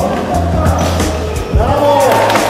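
Basketball shoes squeaking on a wooden sports-hall floor in short bending squeals, with a ball bouncing in sharp knocks, over music playing in the hall.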